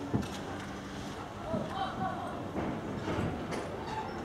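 Aerial firework shells bursting: a few sharp bangs, one just after the start and another about three and a half seconds in, over a continuous rumble of the display.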